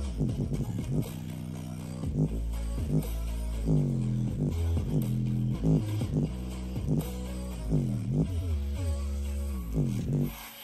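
Bass-boosted music played loud through a JBL portable Bluetooth speaker, its passive radiator pumping: deep bass notes that swoop down and up in pitch, about one a second, over a steady sub-bass.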